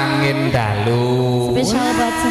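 A woman singing long held notes that slide from one pitch to the next, over the steady accompaniment of a live campursari band.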